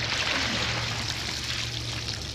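Water pouring and trickling steadily off a pool vacuum's filter canister as it is lifted out of the pool, with a steady low hum underneath.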